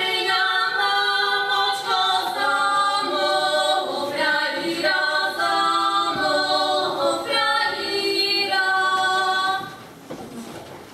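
Women's choir singing a folk song a cappella in several voices, with held notes; the song ends about half a second before the end.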